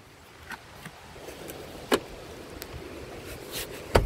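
A few clicks and knocks from handling the folding rear seat back of an Audi Q3, with one sharp click about halfway through and a louder one at the very end as the seat back is pushed to latch, over a steady low background noise.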